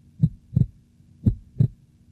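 Heartbeat sound effect: two slow double thumps (lub-dub), about a second apart, over a faint steady hum.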